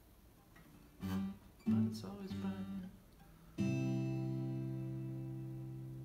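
Acoustic guitar: a few short strums about a second in, then a full chord struck at about three and a half seconds that is left to ring and slowly fade.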